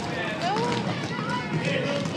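Spectators' voices and short calls echoing in a gymnasium, with players' feet running on the hardwood court underneath.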